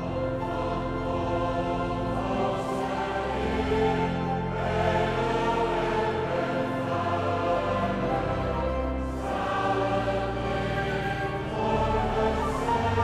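Large congregation singing a hymn in Dutch together, accompanied by pipe organ with steady held bass notes.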